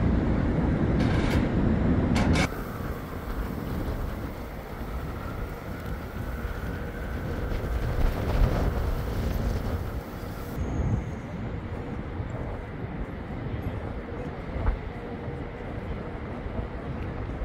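City street ambience. Traffic rumble is loud for the first couple of seconds, then drops suddenly to a quieter, steady distant city hum. A faint high whine swells and fades in the middle.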